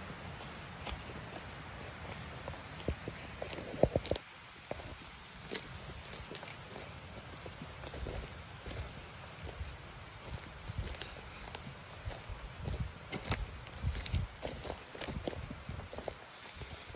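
Irregular footsteps on a forest floor, with short crunches and snaps of twigs and litter underfoot. The sharpest snap comes about four seconds in.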